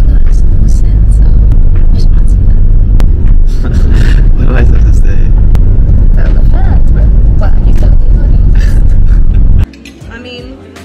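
Heavy low rumble of a moving van heard from inside its cabin, with voices talking over it; the rumble cuts off suddenly near the end.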